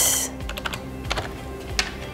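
Typing on a computer keyboard: irregular, spaced key clicks, with quiet background music underneath.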